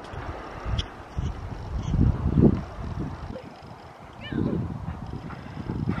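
Wind rumbling and buffeting on the microphone, swelling and fading unevenly, with a distant voice calling out about four seconds in.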